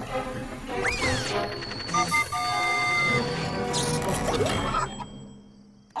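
Cartoon sound effects of a contraption at work over background music: a swooping whistle about a second in, clattering, and held beeping tones. It all dies away near the end.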